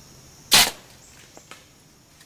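A compound bow being shot: one sharp, loud snap of the string about half a second in, followed by two faint ticks about a second later.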